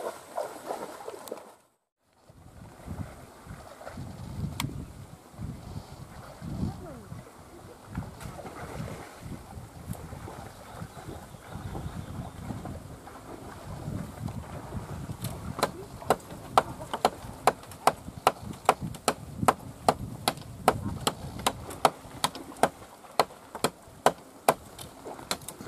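Rustling and scraping in dry bamboo stems and leaf litter as someone crawls through a bamboo pile. In the second half comes a steady run of sharp knocks, about two to three a second.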